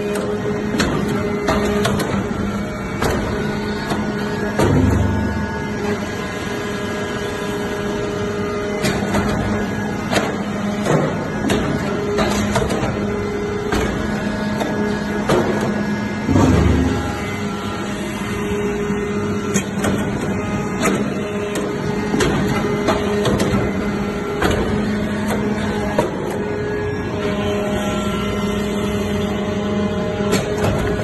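Hydraulic metal-chip briquetting press running: a steady hum from its hydraulic power unit, with frequent sharp clicks and knocks. There are two heavier low thumps, about five seconds in and about sixteen seconds in.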